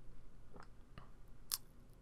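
A few faint, short clicks over quiet room tone; the sharpest comes about one and a half seconds in.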